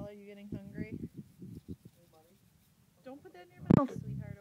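A young child's high, wordless vocal sounds in short calls, with soft knocks and bumps, and a sharp loud thump near the end.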